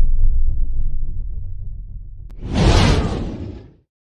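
Cinematic logo-sting sound effect: a deep boom dies away, then a loud rising whoosh about two and a half seconds in that cuts off abruptly just before the end.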